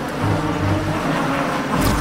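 A steady rushing, rumbling sound effect of the kind laid under a supernatural moment in a TV drama, with no speech over it.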